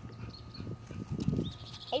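A dog making a rough, low sound that swells about a second in and fades away before the end.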